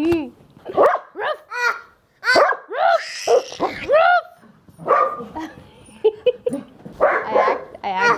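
A small curly-coated dog barking repeatedly in short, sharp barks, most of them in the first half.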